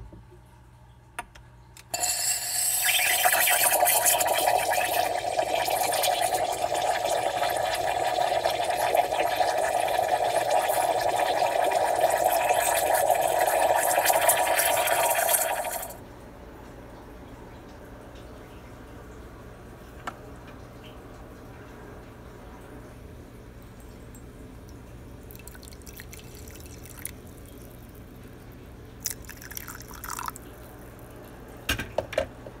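Espresso machine steam wand steaming milk in a ceramic pitcher: a loud steady hiss that starts about two seconds in and cuts off suddenly after about fourteen seconds. After it there is only a faint background with a few light clicks, and coffee is poured into a mug near the end.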